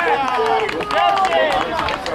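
Players' voices shouting during play, calling for the ball.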